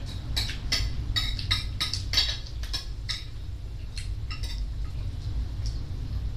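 Spoons and forks clicking and scraping on ceramic plates during a meal, an irregular run of short clicks, two or three a second, over a steady low hum.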